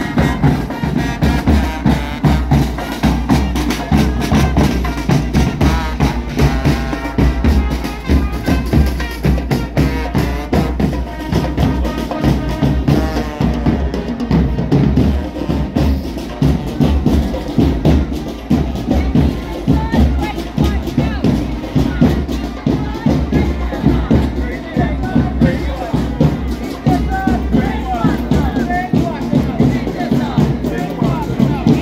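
A marching band's drum corps of snare and bass drums beating a steady march rhythm, with brass horns sounding over it at times.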